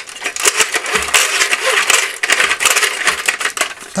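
Plastic gear train of a vintage Masters of the Universe Attak Trak toy clicking and rattling as a wheel locked into the gear is turned by hand, turning over the small electric motor inside to clean its tarnished brushes. The clicking comes in dense, uneven spells.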